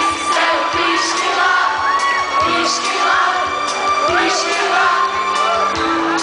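A live band playing a song with sung vocals over drums, electric guitars and keyboard, heard from within the crowd, with audience voices and whoops mixed in.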